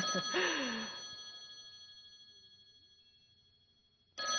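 A voice trails off in the first second. The sound then fades steadily to near silence under a faint, steady high-pitched whine.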